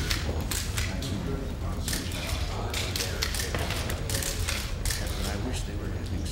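Press still cameras clicking and winding on in rapid, irregular bursts, many shutters at once, over a low murmur of voices in the room.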